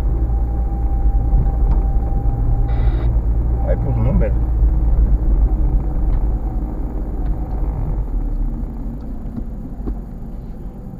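Low, steady rumble of road and engine noise inside a moving car, growing quieter over the last few seconds.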